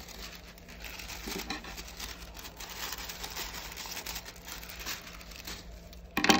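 Tissue paper rustling and crinkling as it is handled and pulled, a dense crackle of small clicks throughout.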